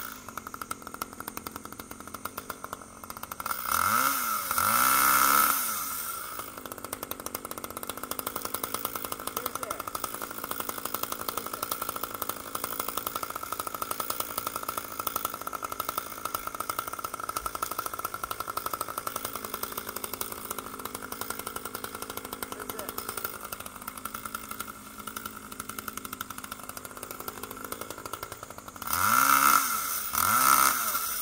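Two-stroke chainsaw idling steadily, revved up twice: once for a couple of seconds about four seconds in and again near the end.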